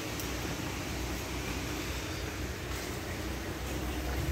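Steady outdoor background noise: an even hiss over a low rumble, with no distinct events.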